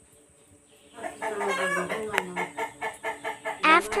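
Chickens clucking in a quick run of short calls, starting about a second in after a near-quiet moment.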